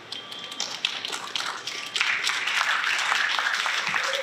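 Audience applauding. It starts as scattered claps and fills out to steady applause about halfway through.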